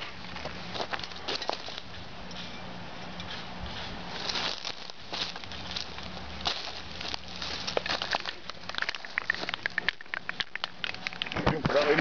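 Dry leaf litter and twigs crunching and crackling underfoot as someone walks on the forest floor, in irregular clicks that grow denser near the end.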